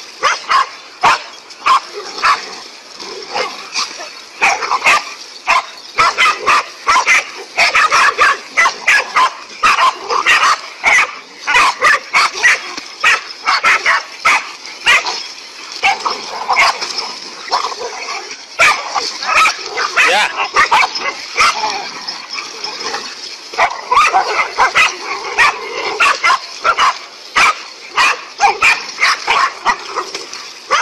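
Several dogs barking at a rearing snake: a rapid, continuous run of sharp barks, often overlapping.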